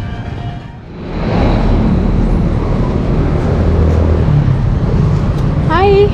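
City street traffic noise, a steady din with a low engine rumble, that rises about a second in as the background music fades out.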